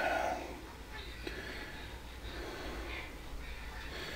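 A quiet room with a low steady hum, and faint handling sounds as a toaster oven's control knob is turned, including one faint click a little over a second in.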